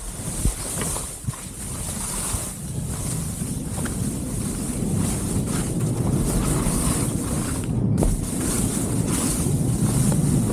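Skis sliding and hissing over slushy spring snow, with wind buffeting the microphone, growing louder as the skier picks up speed. A few sharp clicks in the first second or so.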